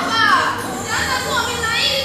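Several young voices overlapping and calling out, their pitch gliding down and up, with a hall's echo.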